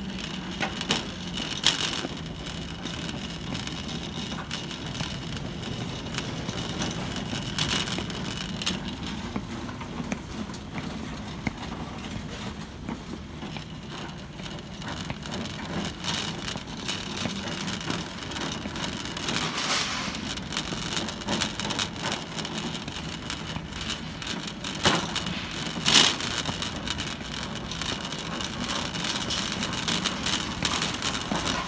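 Wire shopping cart rolling across a hard store floor, rattling steadily, with footsteps and scattered sharper knocks, the loudest near the end.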